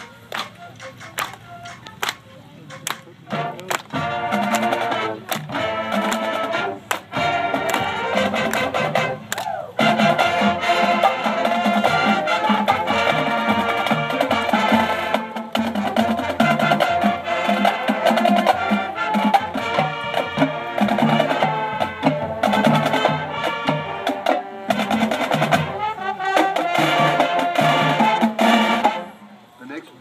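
Marching band playing: a few sharp percussion taps first, then the brass and drumline come in about four seconds in and the full band plays louder from about ten seconds, cutting off just before the end.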